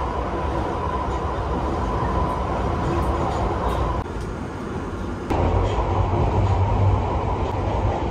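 London Underground train running, heard from inside the carriage: a steady rumble and rattle, with a steady whine through the first half. About four seconds in the sound drops back briefly, then the low rumble returns louder.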